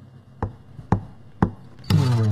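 Three sharp, clipped clicks evenly spaced about half a second apart. On the next beat, near the end, music comes in: a count-in at the start of a backing track.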